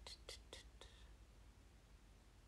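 Faint whispering: a woman breathing out four short syllables under her breath within the first second.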